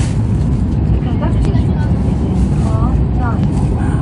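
Steady low rumble of a Hokkaido Shinkansen train running at speed, heard from inside the passenger car.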